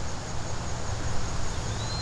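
Woodland background: a steady high insect drone over a low, even rumble, with a faint short rising chirp near the end.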